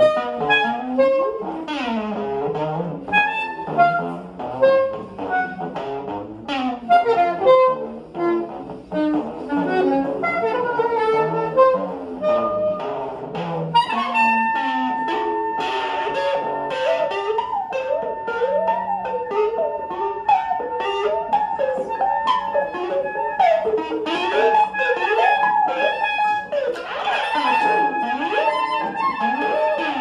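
Electric guitar and soprano saxophone playing together live, an improvised jazz-like duo. The first half is a busy run of short plucked notes; about halfway through, a long high note is held for about ten seconds while lines keep moving beneath it.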